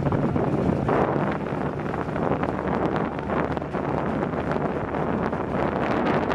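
Wind buffeting the microphone on a boat moving over open water, with water washing past and a low steady hum underneath.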